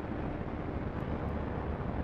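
Steady low rumble and hiss with no distinct events: the background noise of an old film soundtrack.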